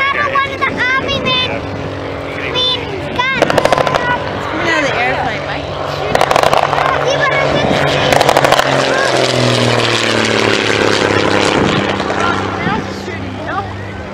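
Messerschmitt Bf 108 Taifun flying past in a display: engine and propeller noise builds to a peak about halfway through. Its pitch then drops as the aircraft passes and draws away.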